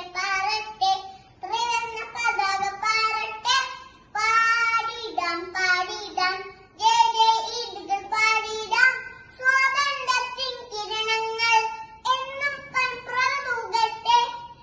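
A young girl singing alone, unaccompanied, in a high voice, in short phrases of held notes with brief pauses between them.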